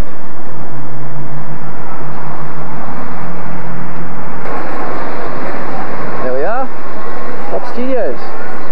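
Loud outdoor street ambience with traffic noise, heard through a camcorder microphone. A steady low drone runs under the noise and stops suddenly about halfway through. A voice calls out briefly about six seconds in and again just at the end.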